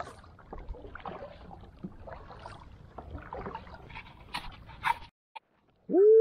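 Kayak paddling: paddle strokes in the water, with knocks and small squeaks from the gear on the plastic hull. The sound cuts off suddenly near the end, and a loud rising tone cuts in at the very end.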